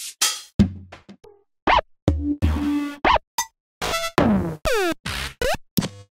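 One-shot drum samples from the Protocol Drums kit played one after another in FL Studio's browser: about a dozen short kick, open hi-hat and percussion hits with gaps between them, one with a pitch that falls about four seconds in.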